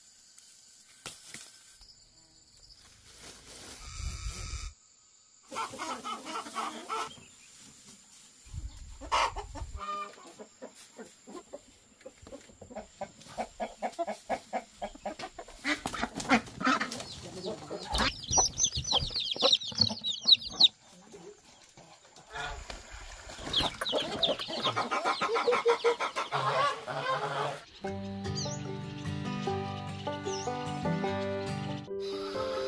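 Chickens clucking and squawking in short bursts, among clicks and rustling from handling. Music with a steady melody begins near the end.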